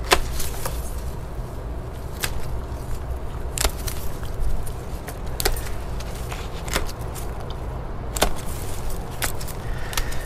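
Hand pruning shears snipping through the stems of a tomato plant: several sharp snips spaced irregularly a second or more apart, over a steady low rumble.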